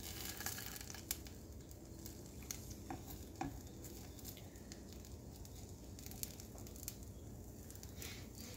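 Eggs frying in a nonstick pan over a gas flame: a faint, steady sizzle with scattered small crackles and pops. A spatula touches the pan a few times in the first few seconds.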